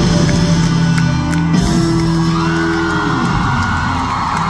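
Live pop-rock band playing loud amplified music with electric guitar in a large arena, with the crowd whooping and shouting over it.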